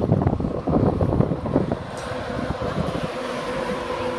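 Electric InterCity 225 train, led by Class 91 locomotive 91130 and its Mark 4 coaches, passing close by on the main line: a loud rumble of wheels on rail, with wind buffeting the microphone. The rumble settles into a steadier hiss about halfway through.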